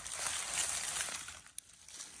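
Dry fallen oak leaves rustling and crackling under a cat rolling on its back while its belly is rubbed, fading after about a second and a half.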